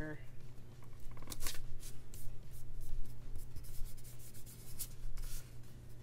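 Paper stickers being peeled up and pressed down by hand onto scrapbook paper: a run of short, dry rustles and rubbing scrapes, loudest about a second and a half in and again past five seconds.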